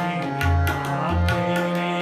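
Harmonium playing the shabad melody in held reed tones, over a tabla beat with light strokes and two deep bass strokes.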